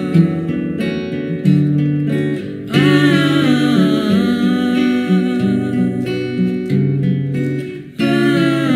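A song played on acoustic guitar, with a voice singing or humming a melody over it.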